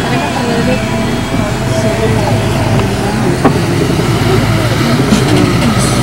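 A motor vehicle running steadily, with indistinct voices over the engine and road noise.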